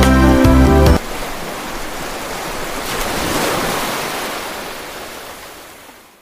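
Intro music cuts off about a second in. Then the sound of ocean surf follows: a wave washing in, swelling to a peak near the middle and fading away to nothing.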